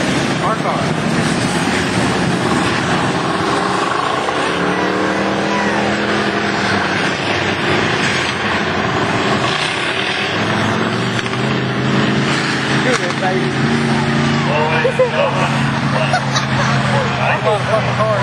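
A field of race cars running laps of an oval track: a continuous engine drone, with pitch rising and falling as cars come past. People's voices talk over it in the last few seconds.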